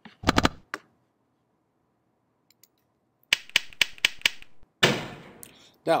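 Sound effects from a lecture slide's animation of a neural motion-detector circuit: a short burst near the start, then a quick run of about seven sharp clicks, then a brief hissing burst, as each receptor is lit in turn and the output cell fires.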